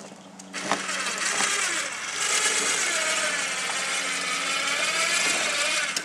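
Electric drive of a go-kart loading stand running, lowering the kart from its tilted position down to level. It is a loud, steady motor-and-gear noise that starts with a click about half a second in and cuts off abruptly near the end.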